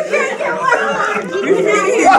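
Several people talking and calling out over one another: group chatter.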